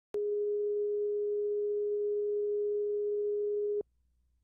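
Steady pure test tone played with SMPTE colour bars: the audio line-up reference tone at the head of a broadcast videotape. It starts with a click just after the beginning, holds one unchanging pitch, and cuts off abruptly shortly before the end.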